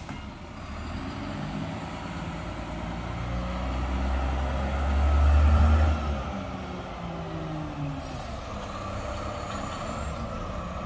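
Garbage truck pulling up to the curb, its engine growing louder to a peak about five seconds in and then easing off. A short hiss of air brakes follows about eight seconds in.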